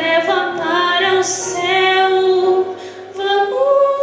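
A solo female singer sings a slow, sustained melody into a handheld microphone, amplified through a sound system. Her notes are long and held, with a brief drop in loudness near the end before the next phrase.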